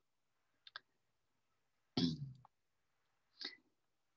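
Faint computer mouse clicks as a web link is clicked, with a brief soft vocal sound about two seconds in.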